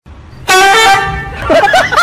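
A loud, steady horn honk about half a second in, lasting about half a second, followed by a jumble of short warbling pitched sounds.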